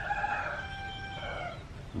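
A rooster crowing: one long call that fades out about a second and a half in.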